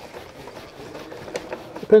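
Faint handling noise with a few small clicks as rubber-gloved hands work at a plastic electrical service cutout.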